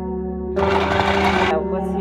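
Electric food processor chopping fresh okra in a single loud burst of about a second, starting about half a second in, over background music.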